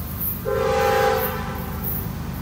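Air horn of an approaching CSX freight locomotive: one short blast of about a second, a chord of several notes, over a steady low rumble.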